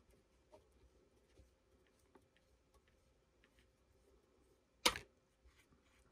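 Faint small ticks while a roll pin pusher's threaded shaft is turned, then about five seconds in a single sharp metallic click as the steel roll pin is pushed free of the backwash valve's T-handle and drops onto the table.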